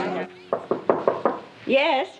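Several sharp knocks on a door, four or five raps in about a second, followed near the end by a woman's voice answering.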